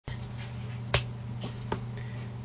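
Three short, sharp clicks over a steady low hum: the loudest about a second in, then two fainter ones close together shortly after.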